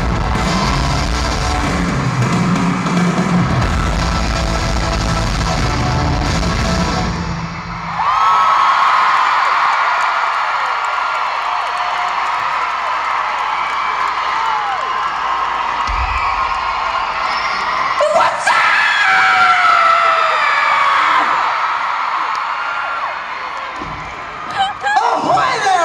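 Live rock band with electric guitars playing the last bars of a song in an arena. The music stops about eight seconds in, and a large crowd screams and cheers, with many high-pitched screams. A second burst of screaming comes about two-thirds of the way through.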